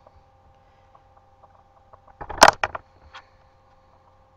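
A quick cluster of sharp clicks and knocks about two seconds in, then a single softer click, over a faint steady electrical hum with a few high tones.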